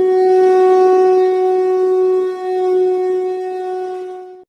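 A conch shell (shankh) blown in one long, steady note that fades away near the end.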